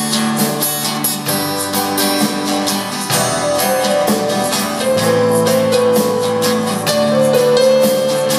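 A rock band playing live: strummed acoustic guitars over bass and a drum kit keeping a steady beat, with a flute holding long melody notes in the second half.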